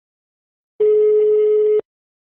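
Telephone ringback tone: a single steady beep about one second long, the tone the caller hears while the line rings at the other end before it is answered.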